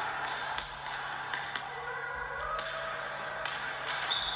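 Basketball dribbled on a hardwood gym floor: irregular sharp bounces, played back from the 1v1 footage.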